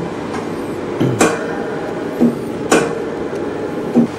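Two sharp metallic knocks, about a second in and near three seconds, over a steady hum. They come as the graphite heater carrying the wafer is slid into the epitaxy reactor and the reactor is shut.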